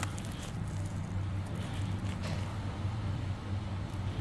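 Mitsubishi Electric passenger elevator travelling upward with the doors shut: a steady low hum of the ride.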